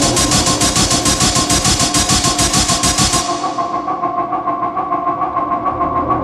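Industrial hard techno from a DJ mix: a fast, even run of noisy percussion hits over steady droning tones. About three seconds in, the hits fade out and the bass drops away, leaving the drone on its own in a breakdown.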